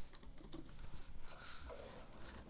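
Faint keystrokes on a computer keyboard: a few separate key clicks as a short word is typed.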